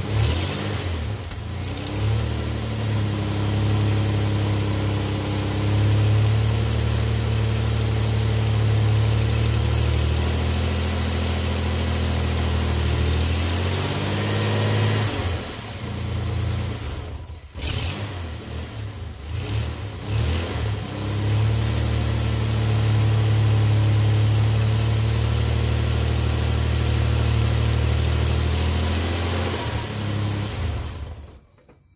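1998 Dodge Dakota engine running at idle with its serpentine belt and pulleys turning, run to check the newly replaced water pump and belt. The steady engine note wavers in pitch about halfway through and dips briefly after a click, then settles back to a steady idle.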